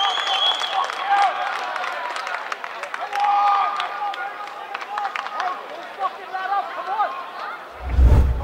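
Footballers and a small crowd shouting and cheering after a goal, with scattered hand claps; a high held tone sounds in the first second. A low boom from the highlight reel's transition sting starts right at the end.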